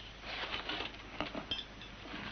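Soft rustling and a few small sharp clicks as paper banknotes are handled and unrolled, with a faint light clink about one and a half seconds in.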